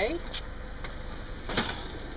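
A faint click and then a short knock of plastic as a dropped flat-screen LCD monitor is handled and lifted off the concrete, over low steady background noise.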